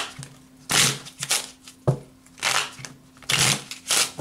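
A deck of cards being shuffled by hand: a string of short papery bursts, about one a second, with one sharper snap about two seconds in.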